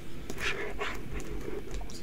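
Scratching and rustling as a knife and fingers pick at the plastic wrap on a sealed trading-card box, in short irregular scrapes.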